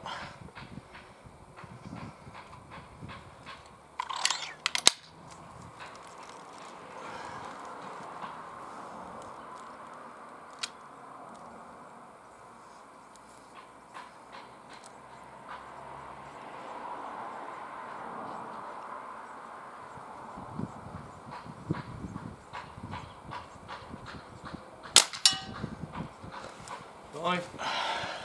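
Two shots from a Diana Mauser K98 .22 underlever spring-piston air rifle, one about four seconds in and one about three seconds before the end, with faint clicks in between.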